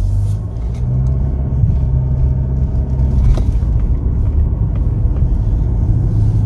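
2020 Nissan Altima S's 2.5-litre four-cylinder engine and CVT pulling the car away from a standstill to about 24 mph, heard inside the cabin. The engine hums at a low, near-steady pitch under a layer of road rumble.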